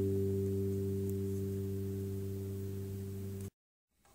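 Acoustic guitar's final chord ringing out and slowly fading at the end of a song, cut off abruptly about three and a half seconds in.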